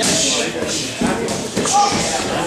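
Several people talking at once in a large, echoing gym hall, with a couple of thuds of kicks landing on strike pads about halfway through.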